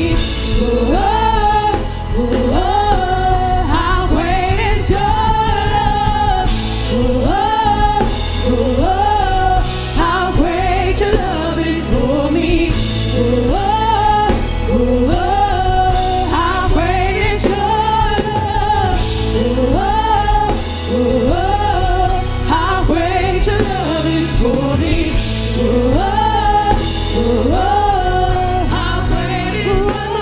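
Live gospel praise-and-worship song: a group of singers at microphones, backed by keyboard and drum kit, singing a short melodic phrase over and over.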